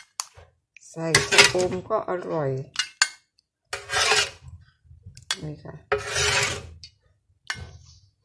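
Ladle scraping and clattering against a pan in a few short bursts as curry broth is scooped out and poured over snails in a bowl.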